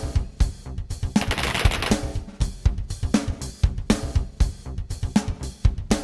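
Irregular, overlapping shots from several semi-automatic AR-15-style rifles on a firing line, several a second, under a drum-heavy music bed. A second-long hiss like a cymbal wash comes about a second in.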